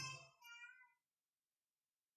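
Near silence after a man's voice trails off. There is one faint, brief pitched sound about half a second in.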